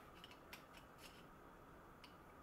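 Near silence, with two faint clicks about half a second apart from channel-lock pliers being handled and fitted onto the lantern's brass fitting.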